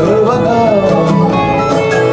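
Live acoustic band music without drums, with a strummed acoustic guitar carrying the rhythm and a gliding melody over it.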